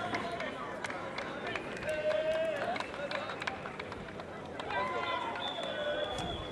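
Scattered voices of people calling out on an open-air football pitch, with some held shouts and many short sharp taps or clicks throughout.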